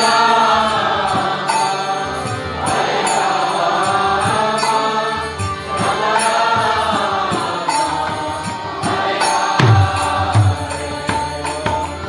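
Kirtan: a long, melodic devotional chant sung in slow, rising-and-falling phrases over a steady harmonium, with a mridanga drum keeping time. Two deep bass strokes on the drum come about four-fifths of the way through.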